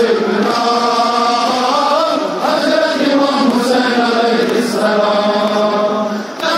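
Men chanting a noha, a Shia mourning lament, in long held notes that glide from one pitch to the next.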